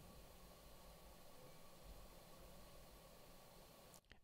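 Near silence: faint background room noise, a low rumble and light hiss, held down by the DBX 286s expander/gate, whose threshold LED shows red as it blocks the background.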